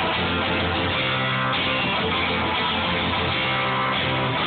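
Guitar strummed, playing an instrumental passage of chords between sung verses, with the chord changing about every second and a half.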